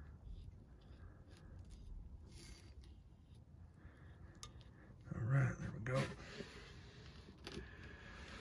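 Faint clicks and rubbing of a steel gas pipe being handled in gloved hands, its threads freshly coated with sealer, with a short burst of a man's voice about five seconds in.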